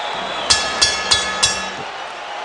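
A boxing ring bell struck four times in quick succession, its metallic tone ringing on between strikes and dying away after the last.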